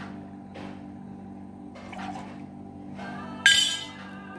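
Background music, with faint pouring and handling at a bar counter. Near the end comes a single loud clink from the bottles and bar tools that rings briefly.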